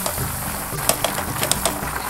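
Flour and margarine roux sizzling in a saucepan while being stirred quickly with a spatula, which scrapes and clicks against the pan several times.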